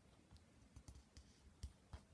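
Faint clicks and taps of fingertips pressing on a plastic DVD case, about six of them at uneven intervals.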